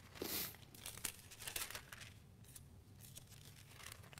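Faint rustling of thin Bible pages being leafed through, a few short crinkly rustles, the loudest about a quarter of a second in and more around one and a half seconds, then quieter.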